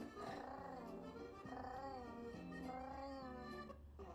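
A cat meowing in a run of drawn-out, rising-then-falling calls about one every second, over music, faintly heard through a screen's speaker.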